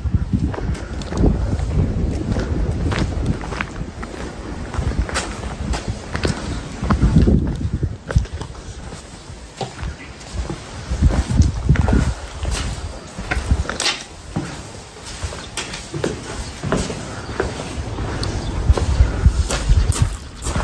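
Footsteps of people walking, with scattered scuffs and clicks, over wind rumbling on the microphone.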